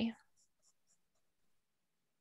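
A spoken word trails off, then near silence with a few faint, brief pencil strokes on paper.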